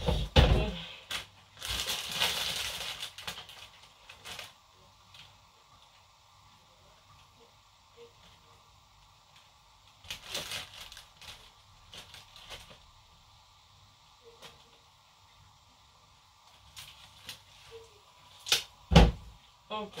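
Sweetcorn being husked by hand: leaves tearing and rustling in a few noisy bursts, with sharp cracks and knocks near the end and quiet stretches between.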